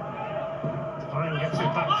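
A football TV commentator's voice over steady stadium crowd noise; the commentary comes in about a second in.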